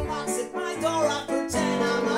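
Piano played in held chords, with a man's voice singing a melody over it.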